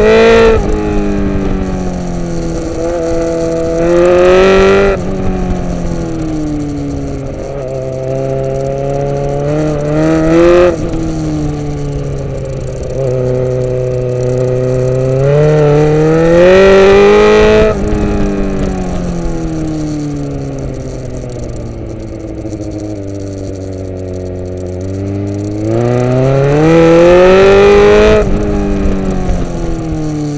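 Suzuki GSX-R sportbike engine heard on board, its revs climbing and dropping over and over as the throttle is opened and closed through a run of bends. The loudest surges come around the middle and again near the end. Between them, around 18 to 25 s, the revs sink slowly for several seconds before climbing again.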